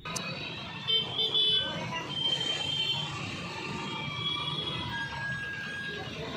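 Road traffic in a jam: vehicle engines running, with several short horn toots scattered through. The loudest toots come about a second in.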